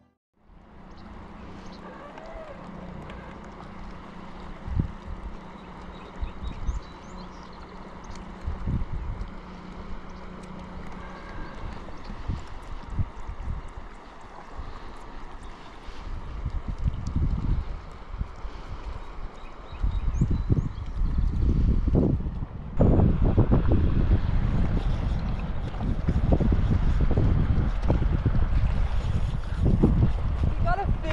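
Wind buffeting the microphone on an open boat, with water lapping against the hull; a low steady hum runs through the first half, and the gusts grow louder and denser in the second half.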